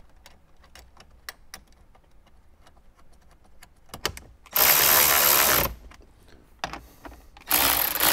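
Cordless electric ratchet driving 10 mm bolts to secure a head-unit mounting body: two short bursts of the motor, the first about a second long a little past halfway and the second near the end, after a few seconds of light clicking as the bolt and tool are set in place.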